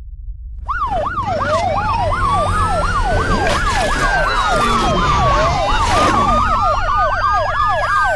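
Siren sounding a fast yelp and a slow wail at the same time over a low rumble. It starts just under a second in: the yelp rises and falls about three times a second, while the wail climbs, falls and climbs again over several seconds.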